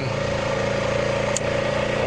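Honda Rubicon 520 ATV's single-cylinder engine running steadily while riding at an even speed, with a steady whine over the engine drone. One brief click about two-thirds of the way through.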